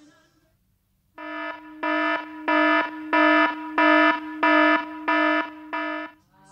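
Electronic alarm-like buzzer tone at one fixed pitch, starting about a second in. It pulses louder about three times every two seconds and stops abruptly at the end.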